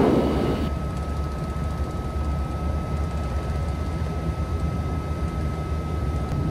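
Steady low drone of the Piaggio P180 Avanti's twin Pratt & Whitney PT6A turboprop engines, heard from inside the cockpit while taxiing, with a thin steady high whine over it.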